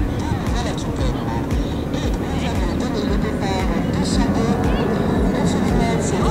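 Indistinct voices over a steady outdoor noise, with irregular low thumps underneath.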